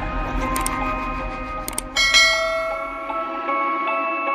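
Outro jingle of ringing bell and chime tones, with a couple of short clicks early and a bright bell strike about halfway through.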